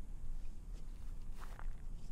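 Footsteps close to the microphone, over a steady low rumble. There are short scuffs about three-quarters of a second in and again around a second and a half.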